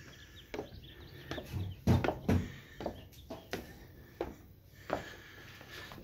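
Footsteps climbing an exterior staircase: a run of uneven thumps, roughly one or two a second. Birds chirp faintly in the background.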